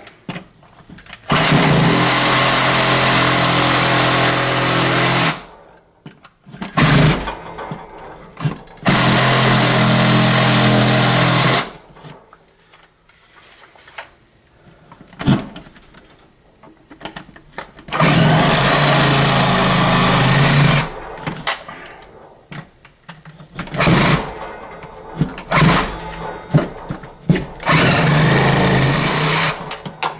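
Reciprocating saw cutting through drywall in four runs of a few seconds each, one for each side of a rectangular electrical-box opening, with short blips of the trigger between them.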